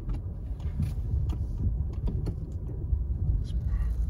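Low, steady rumble inside a 2021 Toyota Prius AWD creeping at walking pace over icy packed snow, with scattered crackles from the tyres on the ice.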